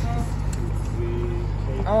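Steady low outdoor rumble, with a voice breaking in near the end.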